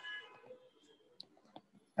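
Faint, scattered clicks and taps of a stylus on a tablet's glass screen during handwriting.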